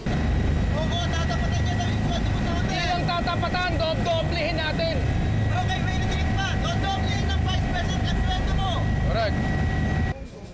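Helicopter cabin noise: a steady low rumble of engine and rotor with a faint steady whine, and a voice talking over it.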